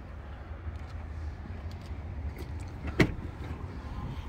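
A pickup truck's rear passenger door latch clicking open once, a sharp click about three seconds in, over a steady low rumble.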